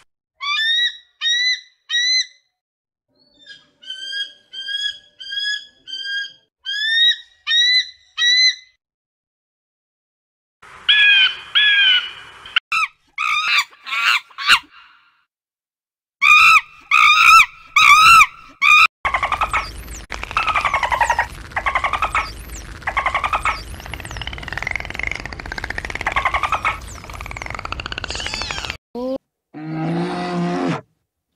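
Bald eagle calling: series of short, high, piping chirps, one after another, over the first several seconds. About halfway through come loud monkey calls, which turn into a long stretch of dense chattering and screeching.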